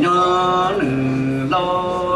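A man chanting Hmong txiv xaiv through a microphone and PA: long held notes of under a second each, the pitch stepping between them.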